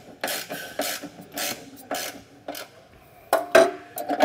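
Ratchet wrench with a socket extension tightening the trailer hitch's middle mounting bolt, clicking in strokes about every half second. A couple of sharper, louder knocks come near the end.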